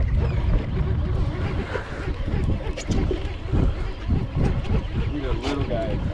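Wind buffeting the microphone in a steady low rumble on a small boat at sea, with water moving around the hull and scattered light knocks; a brief voice comes in near the end.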